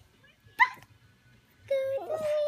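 A dog gives one short, sharp yip about halfway through. A steady held note, like a whine, starts near the end.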